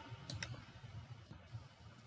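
A few faint, isolated computer mouse clicks as text is selected in a document.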